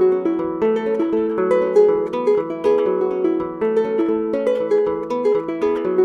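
Adungu, the Ugandan arched harp, plucked in a quick, steady run of repeating melodic notes.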